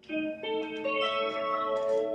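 Electric guitar played through delay effects: a run of plucked notes, each entering about every half second and ringing on so they overlap into a sustained chord.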